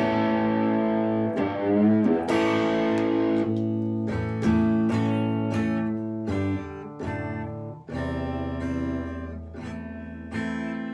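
Les Paul electric guitar played through a JHS Bonsai overdrive pedal: strummed, overdriven chords left to ring, with a string bend about two seconds in.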